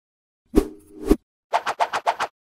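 Synthetic motion-graphics sound effects: two sharp pops with a low tone between them, then a quick run of about five short clicks near the end.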